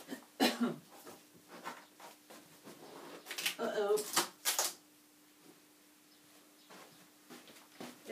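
Brief quiet mumbled speech and a few short rustling handling noises, over a faint steady hum. The sounds come in two short spells, about half a second in and again a little after the middle.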